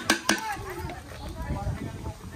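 Metal spoons clinking and scraping against a large metal pan as a heap of cooked yellow rice is stirred, with a few sharp clinks near the start. Voices talk in the background.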